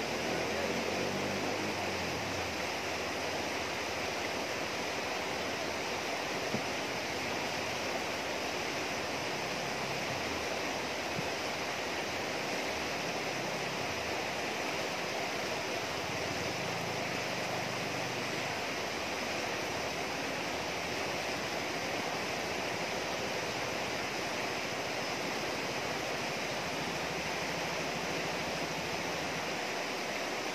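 River water rushing over rocks and small rapids, a steady, even wash of noise.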